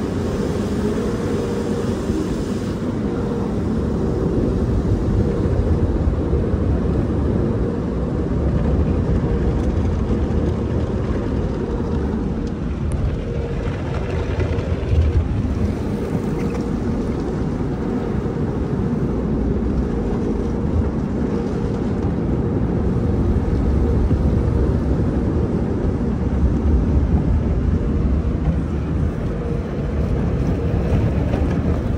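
Automatic tunnel car wash heard from inside the car: water spray and spinning cloth brushes washing over the body and glass, over a steady low rumble and hum of the wash machinery.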